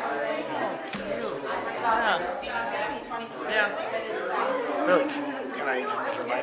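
Several people chatting at once in a large meeting room, overlapping conversation with no one voice leading.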